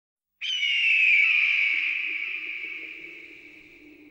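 A single long, high bird call that starts suddenly, glides slowly down in pitch and fades out over about three seconds.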